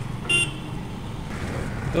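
A short, high-pitched vehicle horn beep about a third of a second in, over a steady low traffic hum.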